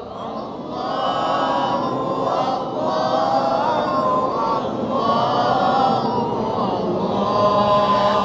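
A gathering of many voices singing a nasheed refrain together, unaccompanied, with a melody that rises and falls.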